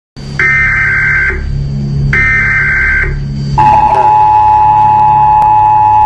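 Emergency alert broadcast tones: two high data bursts of about a second each, then the long, steady two-tone attention signal starting a little past halfway, over a low drone.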